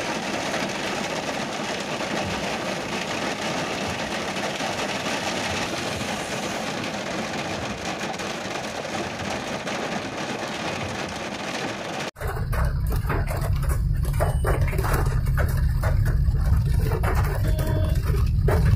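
Heavy rain pelting a moving car, a dense steady hiss. About twelve seconds in it cuts off abruptly and gives way to a louder, deep fluttering rumble of the car driving on the wet road.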